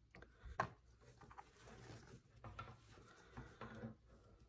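Faint rustling of burlap ribbon being wrapped around a wire wreath frame, with a few soft clicks and taps. The sharpest comes about half a second in.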